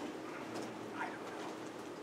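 Quiet room tone in a lecture room, with a faint, distant voice saying a few words about a second in.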